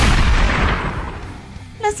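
A single heavy rifle shot, a dubbed sound effect, that rumbles away over about a second and a half under faint background music.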